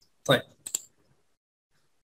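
A single sharp computer mouse click, a little under a second in.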